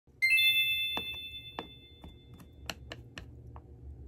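A bright, bell-like ding rings out and fades over about a second and a half, followed by a scattering of light clicks and taps.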